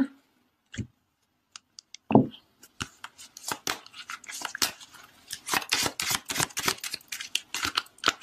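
A deck of oracle cards being shuffled by hand: a dense run of quick papery clicks and rustles from about three seconds in, after a soft thump about two seconds in.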